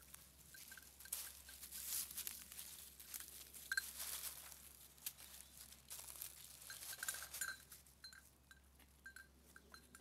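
Faint rustling and crackling of dry fallen leaves as goat kids step through them. Short, high clinking notes come now and then, more often in the second half.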